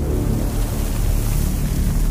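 A steady rushing noise over a low, sustained drone: soundtrack sound design.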